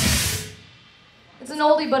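Live heavy metal band with drum kit, crashing cymbals and electric guitars sounding the last chord of a song, which cuts off about half a second in. After a short hush, a voice starts talking through the PA.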